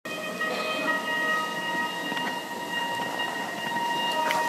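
A drone of several steady held tones over a low murmur of hall noise, in the dark before a concert set begins.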